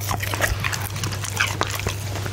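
A goldendoodle chewing a piece of cooked steak close to the microphone: a quick, irregular run of wet clicks and smacks from its mouth and jaws, over a steady low hum.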